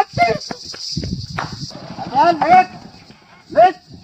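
A long wooden stick striking the ground and mat several times in the first second and a half, between short shouts.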